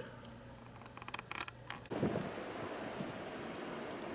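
A few light clicks of handling, then from about two seconds in a steady hiss of blizzard wind and snowstorm air outdoors.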